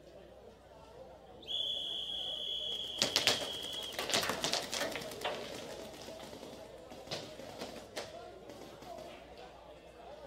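A high, steady buzzer tone sounds for about two and a half seconds, signalling the end of the point after the flag is hung. A run of sharp snaps comes in partway through it and thins out over the next few seconds.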